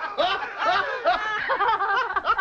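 A man and women laughing hard together.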